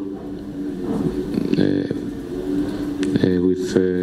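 A man speaking into a press-conference microphone, with pauses between phrases, over a steady low hum.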